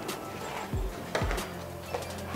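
Background music, with a few soft knocks and rustles as a plastic fondant mat carrying rolled fondant is laid over a cake board.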